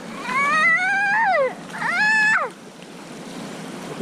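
Two long, high-pitched, wordless excited squeals from a child: the first climbs in pitch and then falls away, the second holds and then drops off.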